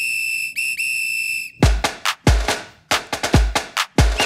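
A whistle blown three times, short, short, then longer, opening a children's dance track; about a second and a half in, the track's beat starts with a heavy kick drum and percussion.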